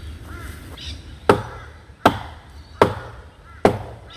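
Hatchet chopping into a dead fallen log, four sharp strikes about three-quarters of a second apart, starting about a second in.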